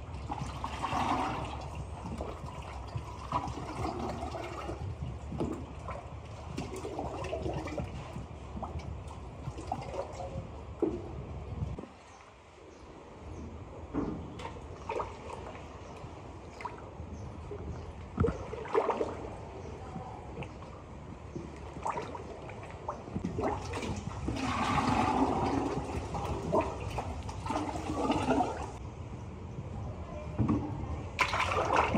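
Liquid clay slip poured from a bucket into plaster moulds, over a steady low hum. The pouring comes in louder stretches near the start and again about four-fifths of the way through.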